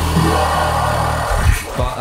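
Electronic sound from a live synthesizer and keyboard rig: a loud, low, steady drone with a noisy wash above it, falling away about a second and a half in.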